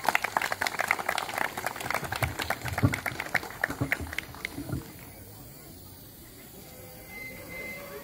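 A small audience applauding, many hands clapping irregularly, then dying away about four and a half seconds in, leaving quiet background.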